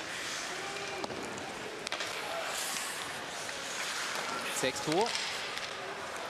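Ice hockey rink sound from a TV broadcast: a steady wash of crowd and on-ice noise, with two sharp clacks of stick or puck about one and two seconds in.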